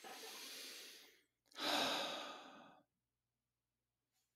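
A person breathing close to a microphone: two long breaths about a second apart, the second louder, like a sigh.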